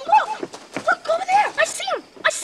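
Boys' voices shouting excitedly in short, high-pitched bursts.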